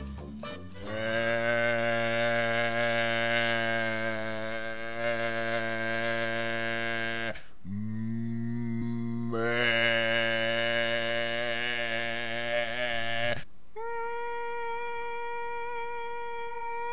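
A low voice humming long held notes with a slight waver: one note for about six seconds, a short break, a second long note, then about two seconds from the end it jumps to a higher held note.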